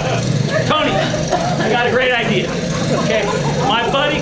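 Amplified stage speech over a steady low hum, with one short knock a little under a second in.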